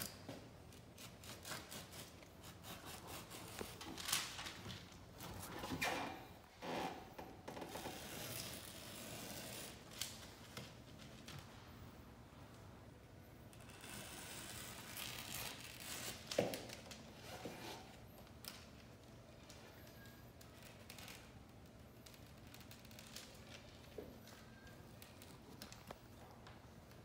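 Faint scratchy rasps of a knife blade cutting through grasscloth wallpaper along a metal straightedge, in a double cut through two overlapped layers. Scattered clicks and paper rustles come from the tools and the backing paper.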